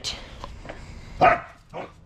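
A dog barks once, short and loud, about a second in, with a softer second sound near the end.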